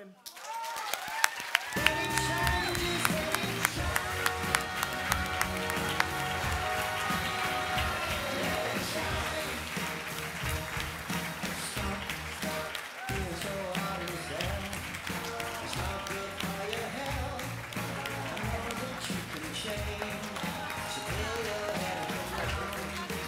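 Recorded music with a steady beat and a melody, swelling in during the first two seconds and then running on.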